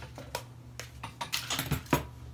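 Hair-styling tools (a round brush, scissors and a blow dryer) handled and set down on a tabletop: a run of light clicks and knocks that come closer together in the second half, with the loudest knock near the end.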